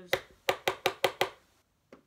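A makeup brush tapped sharply against a hard surface about six times in quick succession, roughly five taps a second, knocking loose powder off the bristles.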